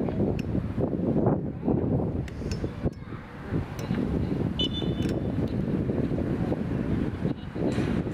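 Wind buffeting the camera microphone, a gusty rumble that rises and falls, easing briefly a few seconds in. About halfway through there is a short, faint high tone.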